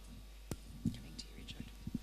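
Handheld microphone handling noise as the mic is passed along: one sharp click about half a second in and a few faint low knocks, over a steady low hum.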